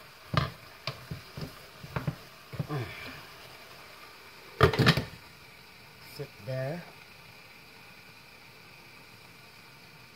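Wooden spoon stirring food in a metal cooking pot, knocking against the pot several times. About five seconds in comes a louder, brief clatter of cookware.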